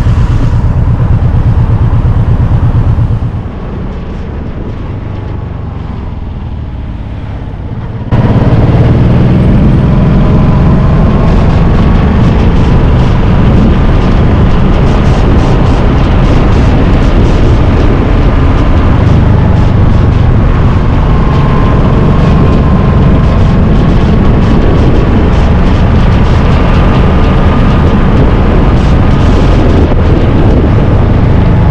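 Motorcycle on the move with heavy wind noise on the microphone. About three seconds in it drops quieter for a few seconds, with the engine note rising and falling. At about eight seconds the loud wind and engine come back suddenly and then hold steady.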